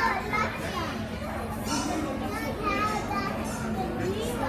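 Children's voices and chatter in the background, with a steady low hum beneath.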